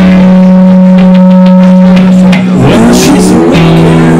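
Live blues-rock guitar music from a resonator guitar and a hollow-body electric guitar: one long held note for about two seconds, then sliding glides in pitch a little past halfway, settling into steady notes again near the end.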